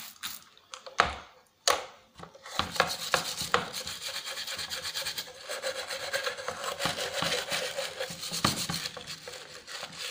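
A metal scouring pad scrubbing the grimy, wet plastic housing of a Black & Decker belt sander in quick back-and-forth strokes, a continuous scratchy rubbing. Two knocks come in the first two seconds, before the scrubbing starts.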